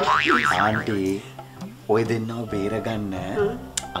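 A wobbling, warbling comic sound effect in about the first second, its pitch swinging quickly up and down, followed by voices talking.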